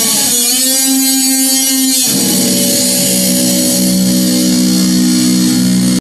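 Electric Stratocaster guitar played through a death metal distortion pedal. It holds one sustained, heavily harmonic note for about two seconds, then a lower sustained note or chord that rings on.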